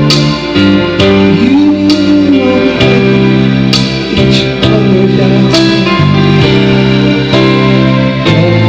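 Karaoke backing track playing through the PA, with a man singing along into a microphone.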